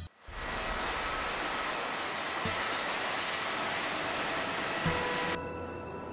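Steady rushing roar of airport ambience, likely jet engine and apron noise. Near the end it turns quieter and duller, and faint steady tones join it.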